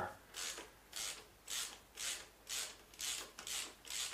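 Hand ratchet wrench undoing a 10 mm bolt on a cover of a Tesla drive unit, its pawl rasping in short strokes about twice a second as the handle is swung back and forth.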